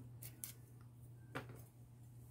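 Kitchen knife paring the skin off a Korean radish: a few faint, short scrapes, the clearest about one and a half seconds in.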